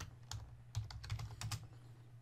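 Computer keyboard typing: a run of quick keystrokes as a short phrase is typed.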